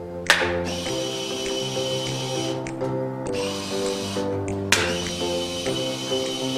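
Background music with sustained chords over a bass line, with a crash about a quarter second in and another about five seconds in.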